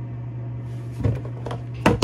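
Plastic soap bottles being handled and knocked together. There are a few light knocks, then a sharp, louder one near the end, over a steady low hum.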